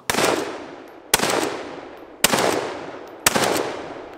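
Four gunshots, evenly spaced about a second apart, each followed by a long echoing decay.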